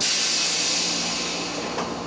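A burst of compressed air hissing out of a standing 115-series electric train, starting suddenly and fading away over about two seconds.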